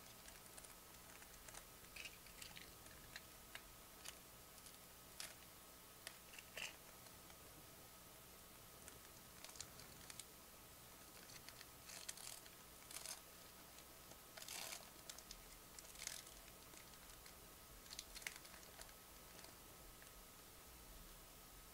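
Faint, scattered crinkles and rustles of a foil trading-card pack being peeled open by hand, coming in irregular short bursts, over a faint steady hum.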